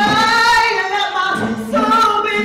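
Unaccompanied singing led by a woman's voice holding long, wavering notes, with other voices joining in harmony.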